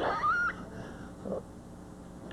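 An elderly man coughs once at the start, followed by a short high, rising squeaky tone lasting about half a second.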